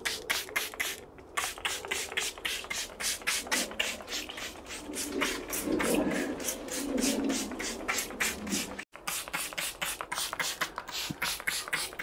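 Hand trigger spray bottle misting plants with water: rapid repeated squeezes, each a short hiss, about four a second.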